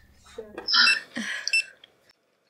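Handheld barcode scanner beeping twice, about half a second apart, as items are scanned at a shop checkout, over rustling of clothing being handled.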